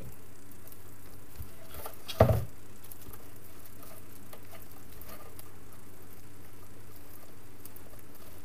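A decorated grapevine wreath being handled on a worktable: faint rustling and light ticks over a steady low hum, with one dull thump about two seconds in.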